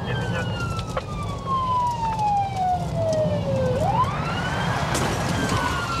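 Police car siren in slow wail mode, heard from inside the pursuing patrol car. The wail falls steadily for several seconds, climbs back up about four seconds in and starts to fall again, over the steady low rumble of the car's engine and tyres.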